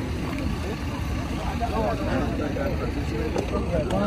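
Overlapping voices of a crowd of bystanders talking over a steady low rumble.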